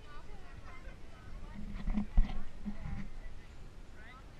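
Indistinct voices, with a cluster of low knocks and thumps around the middle; the loudest comes about halfway through.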